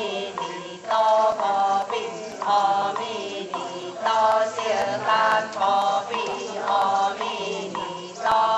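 Ritual chanting: a short sung phrase repeated over and over in a steady rhythm, coming round about every one and a half seconds.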